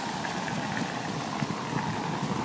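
Steady outdoor street noise with a low hum, with no single event standing out.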